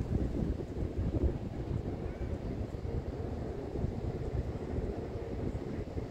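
Wind buffeting a phone's microphone, a gusting low rumble that rises and falls unevenly.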